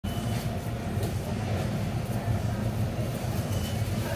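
Steady low mechanical rumble, with a few faint clicks over it.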